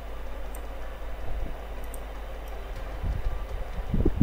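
Steady background noise with a low hum, with a few faint short clicks.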